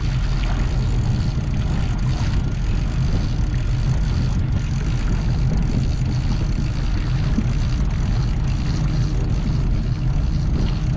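Fishing boat's engine running steadily at low speed: a constant low drone.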